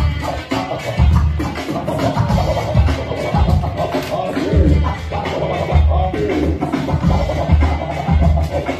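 Electronic dance music mixed live on a DJ controller and played over speakers, with a steady bass beat and record-style scratches worked on the jog wheels.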